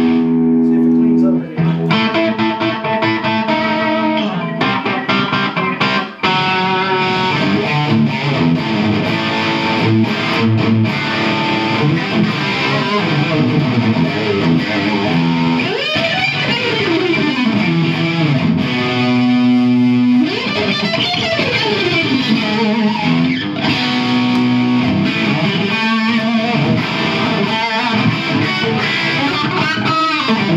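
Electric guitar played through a Rocktron Piranha all-tube preamp on a distorted rock setting: riffs and held notes. Notes slide down and back up in pitch about halfway through, and again a few seconds later.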